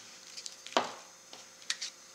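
Handling sounds of a squeezed liquid glue bottle laying a line of glue on black cardstock: a few soft clicks and one short rub of paper about three-quarters of a second in.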